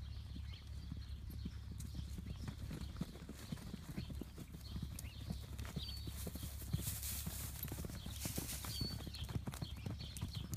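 Hoofbeats of several horses, mares with a young foal, trotting and cantering over turf and packed dirt in a quick, irregular patter of dull thuds.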